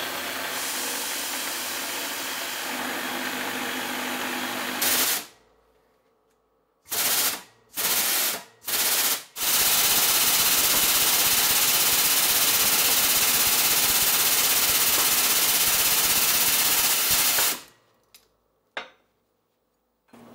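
An end mill cutting a slot into an aluminium bushing, a steady cutting noise for about five seconds that then cuts off. After three short bursts comes a long, loud, steady noise as a C-style keyway broach is forced through an aluminium timing pulley, stopping suddenly after about eight seconds.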